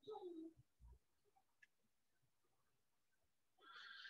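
Near silence: room tone of a video call. A brief faint tone falls in pitch right at the start, and a soft thump and a faint click follow within the next two seconds.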